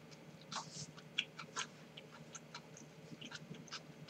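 Chopsticks clicking and scraping against a nonstick frying pan while picking up food, a string of light, irregular taps with a slightly longer scrape about half a second in.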